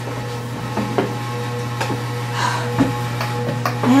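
Steady low electronic hum with a fainter steady high tone above it, an unexplained droning noise that does not stop, with a few light knocks or taps over it.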